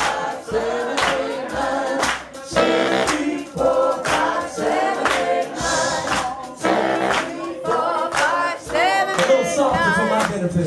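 Live blues band performing: several voices singing together over a steady beat of sharp hits.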